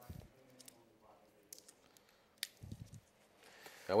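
Faint clicks and rustles of hands working the foil and wire cage at the top of a sparkling wine bottle, with one sharper click about two and a half seconds in.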